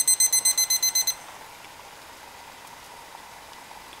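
Digital cooking thermometer's alarm beeping rapidly and high-pitched, signalling that the water has reached its 212°F boil. It cuts off suddenly about a second in, leaving a faint steady hiss.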